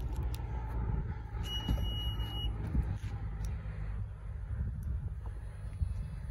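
A single high electronic beep lasting about a second, about a second and a half in: the 2021 Honda CR-V's power tailgate warning beep as the tailgate is opened. A low rumble runs underneath.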